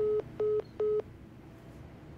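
Three short, identical phone beeps, evenly spaced in the first second: the tone of a phone call being disconnected.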